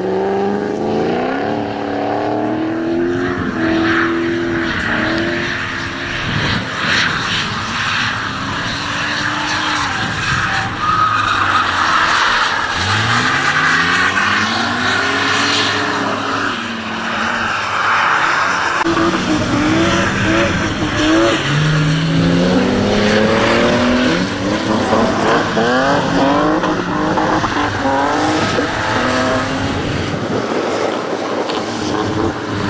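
BMW drift cars' engines revving up and down again and again through slides, the pitch climbing and dropping and fluttering in quick bursts later on. Through the middle stretch, tyre noise and hissing spray from the wet track come through loudly over the engine.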